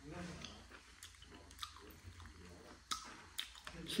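A man chewing a mouthful of boiled hand-pulled mutton, with faint wet mouth sounds and a few small clicks.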